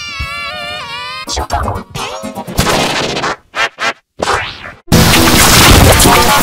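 A cartoon girl's crying, pitch-shifted and distorted by effects editing: a wavering wail, then choppy cut-up fragments with short silent gaps. About five seconds in, a sudden, much louder, harshly distorted stretch takes over.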